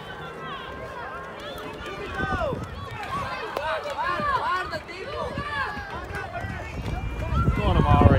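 Young players shouting and calling to each other across a football pitch: several distant, high-pitched voices overlapping, their pitch rising and falling. A low rumble comes in near the end.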